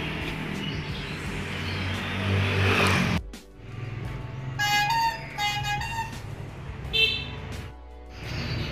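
Outdoor background noise with a low rumble that grows louder, cut off abruptly about three seconds in; then background music with a short melody of sustained notes.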